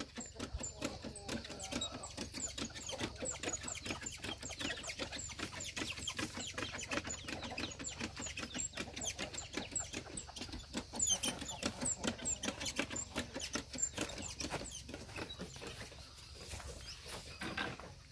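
Manual backpack sprayer spraying tick poison onto a calf: a dense, irregular run of quick clicks and patter that thins out near the end.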